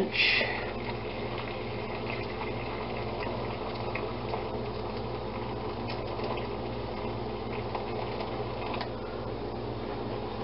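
Hot water pouring steadily from a kettle into a slow cooker's ceramic insert.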